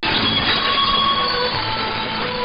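Shortwave AM reception of Reach Beyond Australia on 9685 kHz: a weak signal buried in heavy hiss and static, with faint music notes breaking through the noise. The audio drops out for an instant at the start.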